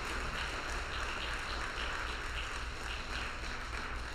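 Church congregation applauding, many hands clapping steadily together.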